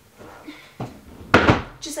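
Under-bed storage drawer pushed shut, closing with a sharp thud a little over halfway through, after a smaller knock.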